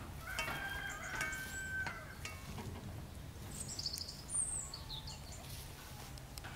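A rooster crowing once, one drawn-out call of about a second and a half near the start, followed a couple of seconds later by brief high chirps of small birds.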